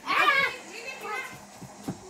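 Children playing: a child's high-pitched voice calls out briefly at the start, with quieter voices after. Near the end comes a short thump as a boy comes down onto the floor mattress in a handstand.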